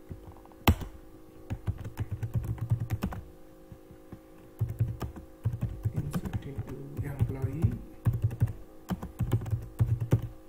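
Typing on a computer keyboard in quick bursts of keystrokes with short pauses between them, and one sharp, louder click about a second in.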